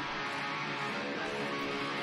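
Electric guitar line from a live metal band recording, playing at a steady level.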